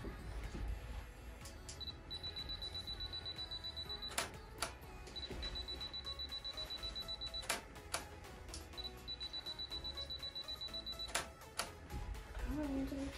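Camera self-timer beeping rapidly at one high pitch in three runs of about two seconds each. Each run ends in a sharp shutter click or two as a photo is taken.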